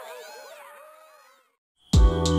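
Cartoon sound effects of an animated logo intro: many overlapping squeaky tones sliding up and down, fading out to silence a little past halfway. Near the end a sudden loud hit opens the film's music.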